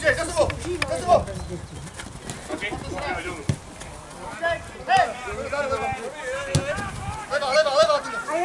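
Footballers shouting and calling to each other across the pitch, with a few sharp thuds of the ball being kicked.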